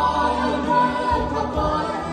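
Live Jewish vocal music: a boy soloist and a man singing into microphones with a male backing choir, over electric keyboard accompaniment, on long held notes.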